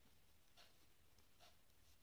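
Near silence, with two faint short scratchy sounds of metal knitting needles and yarn as stitches are worked.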